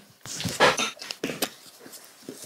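A few knocks and taps as objects are picked up and set down on a hard desktop, the loudest with a dull thud just over half a second in.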